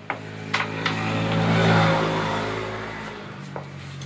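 A vehicle engine passing by, swelling to its loudest about halfway through and then fading. Sharp clicks in the first second: a cue striking and the discs knocking on the table.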